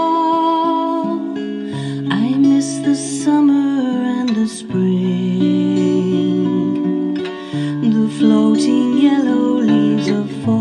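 Acoustic guitar strummed through slow chord changes, with a woman's sung note held over the first second or so before the guitar carries on alone.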